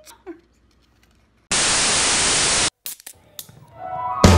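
A burst of static-like hiss, steady and a little over a second long, that cuts off abruptly after a short silence. Near the end, a rock track with electric guitar and drums starts.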